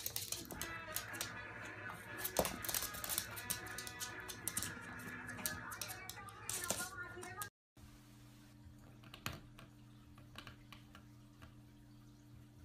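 Pets scuffling and wrestling on a wooden floor: many quick clicks and scrapes, with background music and voices behind them. After a sudden cut about seven and a half seconds in, only a quiet steady room hum with a few faint clicks.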